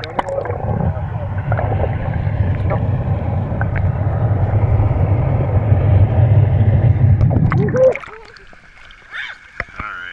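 Pool water heard underwater through a GoPro camera's waterproof housing: a loud, muffled low rumble of churning water and bubbles. It drops away suddenly about eight seconds in as the camera comes back above the surface.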